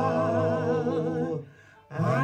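Several voices singing a held chord in harmony, the notes wavering gently with vibrato, then breaking off about a second and a half in for a brief pause before the next line.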